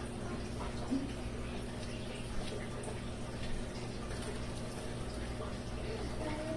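Steady low hum and hiss of background noise, with a few faint ticks.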